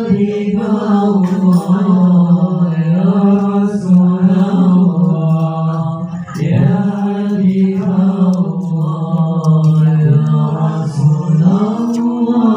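A man chanting a suluk solo into a microphone: long drawn-out notes with a slow, ornamented wavering in pitch. He breaks for breath about six seconds in and again near the end.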